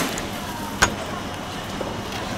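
Steady outdoor street noise with traffic, and a single sharp click or knock about halfway through.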